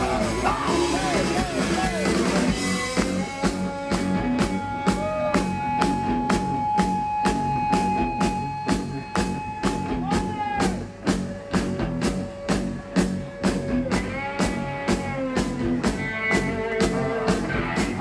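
Live rock band playing an instrumental passage: drum kit keeping a steady beat under electric guitar holding long sustained notes that bend up and down, with bass underneath.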